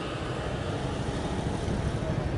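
Steady outdoor background noise: an even low rumble and hiss with no distinct events.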